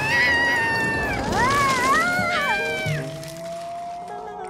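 High-pitched cartoon ant voices yelling in wavering, sliding cries over background music. After about three seconds the cries stop and a long, thin tone rises slowly.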